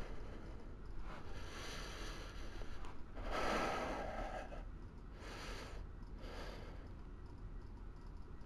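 A man breathing close to the microphone: four noisy breaths, the second, about three seconds in, the longest and loudest, over a low steady hum.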